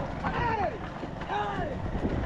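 Repeated high-pitched shouts from the cart crew urging the racing bulls on, about one a second, each rising then falling in pitch. A steady low rumble of wind and the moving cart runs underneath.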